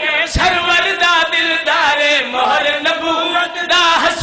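Men's voices chanting a Shia mourning recitation together into a loud microphone, with sustained, wavering pitch. A single low thump comes about a third of a second in.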